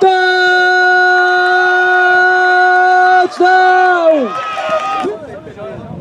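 A commentator's long, drawn-out shout held on one steady pitch for about four seconds, with a brief break near the end before it falls away: the drawn-out call of a touchdown. Quieter voices follow.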